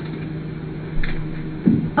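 Room tone in a pause between words: a steady low hum, with a faint short sound about a second in and a brief low sound just before the talk resumes.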